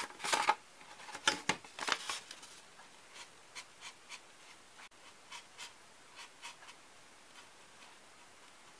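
Felt-tip marker drawing on a polystyrene foam food tray: faint, short scratchy strokes, about two a second, through the second half. Louder rubbing and scraping in the first two seconds as the foam tray and a metal ruler are handled.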